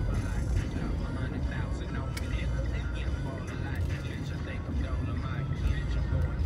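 Steady low road and engine rumble inside a moving car's cabin.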